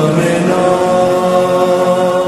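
Slowed-down, reverb-heavy lofi remix of a Hindi film song: long held notes ringing on steadily, with little movement, at the song's close.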